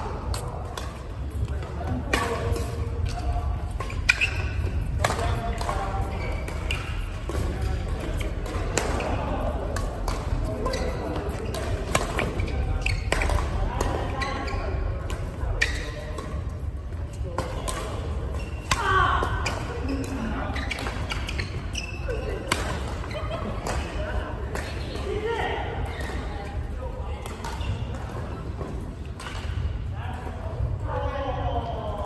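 Badminton rally: rackets striking the shuttlecock in sharp cracks every second or two, with shoes on the court floor, among the voices of players in a large sports hall.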